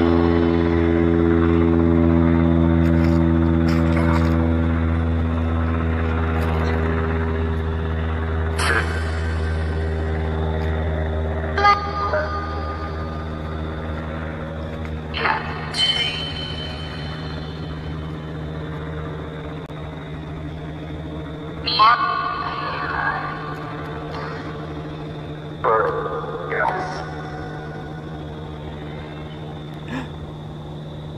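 Spirit box scanning radio at full volume: a choppy stream of static with clipped fragments of voices and music, broken by several sudden louder blips. Under it a steady low droning hum slowly fades away.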